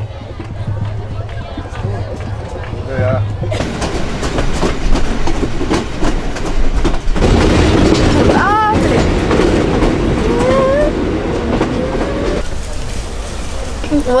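Passenger train running along the track, heard through an open carriage doorway, with a steady rumble and its wheels clicking over the rail joints. It gets louder about three and a half seconds in and is loudest in the middle to later part, with voices heard now and then over it.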